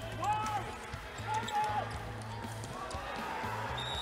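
Indoor floorball play heard in a large sports hall: short squeaks from players' shoes on the court floor over a low, pulsing background beat. Near the end a referee's whistle starts and is held.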